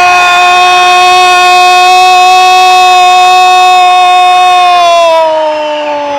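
A sports commentator's long drawn-out "Gooool!" cry announcing a goal: one loud held note for about five seconds that sags in pitch near the end.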